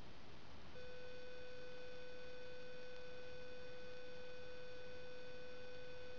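A steady electronic beep-like tone that starts suddenly about a second in and holds without changing, over a faint background hiss.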